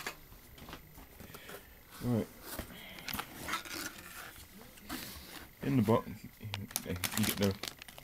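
A cardboard box being opened and a shiny plastic anti-static bag crinkling as it is handled, with bursts of crackling about three seconds in and again near the end.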